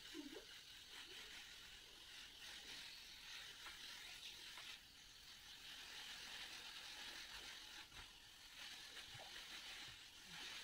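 Faint, steady hiss of a hand-pump pressure sprayer misting cleaning solution onto fabric sofa upholstery.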